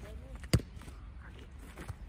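A football being struck: one sharp thud about half a second in, with a fainter knock near the end.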